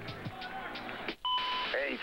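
About a second in, the broadcast sound cuts out and a short electronic beep follows: two steady pitches held together for about half a second, opening a TV commercial. A voice starts just after it.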